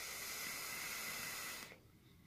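A vape being drawn on, a box mod with an atomizer: a steady hiss of air and vapour through the atomizer for just under two seconds, stopping shortly before the end.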